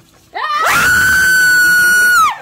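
A person's long, high-pitched scream of excitement: it starts about a third of a second in, rises quickly in pitch and is then held steady and loud.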